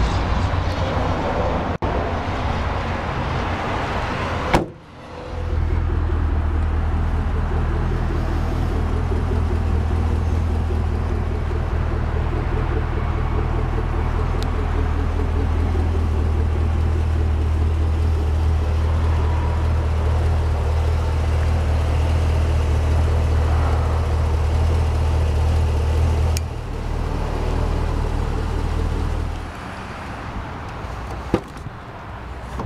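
A sharp thud about four and a half seconds in, then the steady low rumble of a running vehicle, which drops away near the end.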